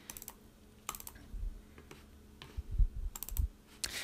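Scattered clicks of a computer mouse's buttons, in small groups of two or three, with a couple of soft low thumps among them.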